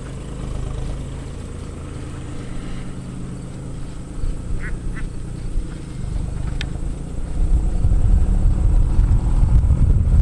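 A steady low rumble, most likely wind buffeting the microphone, that grows clearly louder in the second half. Two short pitched calls come close together about halfway through, and a single click follows soon after.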